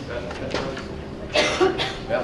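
A person coughs twice in quick succession about a second and a half in, over a low murmur of voices.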